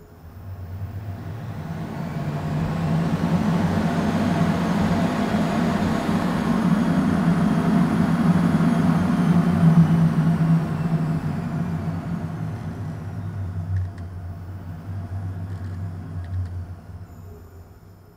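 Wind tunnel fan run up to full power: a low hum and rush of air with a thin whine that rises in pitch and loudness over the first half, then falls as the fan winds down, fading away near the end.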